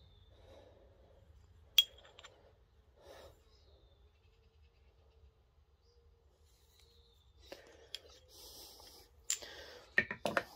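Quiet handling of a metal-shafted nut driver and its removable bit: one sharp metallic click a couple of seconds in and faint rustles of handling. Near the end come a few light clicks and knocks as the tools are set back among the others on the stand.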